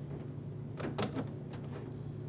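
A few faint clicks and rubs about a second in as a server's power cord is handled at a power strip, over a low steady hum.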